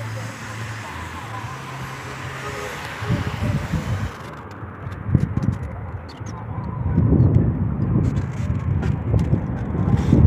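Open-air street sound with traffic, heard from a rooftop; from about three seconds in the microphone takes loud, irregular low rumbling gusts. A background music bed is still playing during the first three seconds.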